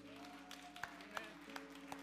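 Soft, sustained background music chords held steady, with a few faint sharp clicks scattered through.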